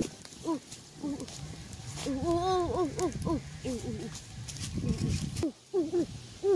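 A voice making short wordless calls that rise and fall in pitch, in quick runs, with faint clicks in between.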